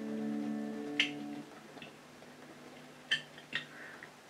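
A guitar chord rings out and fades over about a second and a half. A sharp click comes about a second in, and two more come close together after three seconds.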